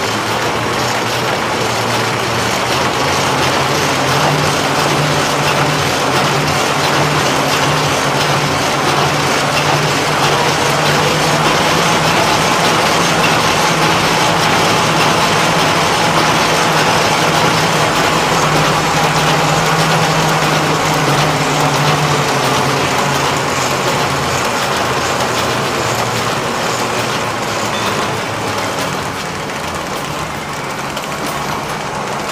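Industrial paper-converting machine running steadily at production speed: a dense, continuous mechanical clatter with a steady low hum that swells through the middle and eases near the end.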